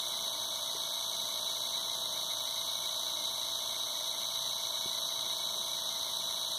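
Razor E300 scooter's 24-volt DC motor running steadily under no load at about 1,700 RPM on a speed controller, giving a steady high-pitched whine.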